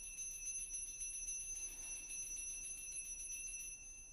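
Altar bells rung continuously at the elevation of the chalice, marking the consecration: a high, shimmering ring made of rapid repeated strikes that stops shortly before the end.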